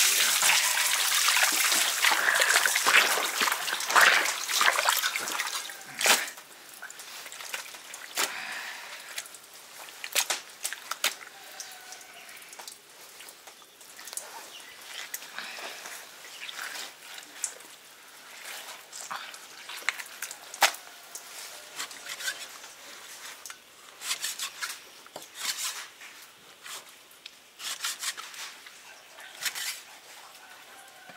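Raw beef omasum tripe being scrubbed and squeezed by hand in a basin of water, with wet splashing and squelching for the first six seconds. After that it goes much quieter: scattered soft wet squishes and small taps as the tripe is handled and its leaves are pulled apart on a wooden chopping block.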